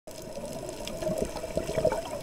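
Underwater bubbling and water noise, muffled, over a steady low hum, growing louder toward the end.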